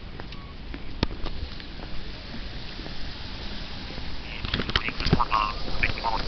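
Street ambience heard while walking on pavement, with a few sharp taps in the first half. In the last third come a run of short, quack-like pitched calls.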